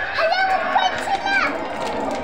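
A young child's high-pitched, wordless cries, a quick run of rising and falling squeals lasting about a second and a half.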